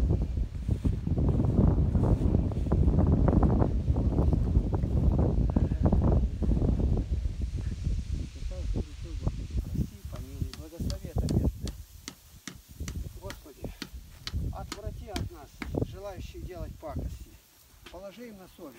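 Rustling of dry grass under walking feet with wind buffeting the microphone. About ten seconds in this gives way to quiet murmured prayer from men's voices, with a scatter of faint high clicks.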